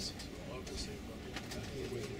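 Tour coach moving at low speed: a steady low cabin rumble from the engine and road, with low voices talking quietly inside the cabin.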